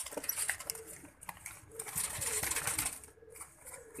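Caged domestic pigeons: faint low cooing mixed with scattered light clicks and rustling as the birds shift about.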